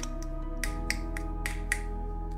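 Background music: held sustained chords under a light beat of short, sharp snap-like clicks, about three a second.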